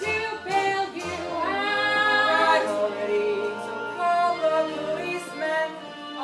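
A girl singing a show-tune line solo, with a note that slides up and is held about a second and a half in.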